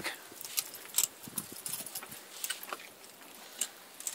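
A few light, scattered metal clinks and rattles of a rope being tied onto a hanging swivel and ring.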